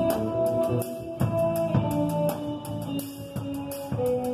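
Live instrumental band: drum kit keeping a steady beat with cymbals, snare and bass drum, under electric guitar, bass guitar and a saxophone melody of long held notes.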